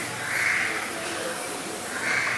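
A crow cawing: one harsh call about half a second in and another at the very end, part of a series repeating roughly once a second.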